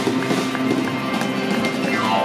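Live band music with an upright double bass and a drum kit playing a steady beat.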